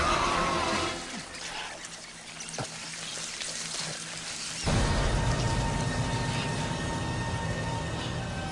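Horror-film soundtrack: wet, squelching noise from a swarm of slug-like creatures over sustained score. It drops quieter about a second in, then swells suddenly and loudly in the low end about four and a half seconds in and holds.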